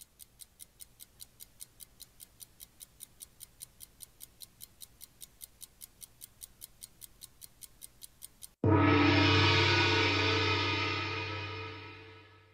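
A countdown ticking sound effect, light and fast at about five ticks a second, runs while the quiz question waits for an answer. About eight and a half seconds in it stops and a gong is struck, a loud, rich ringing tone that fades away over the last few seconds.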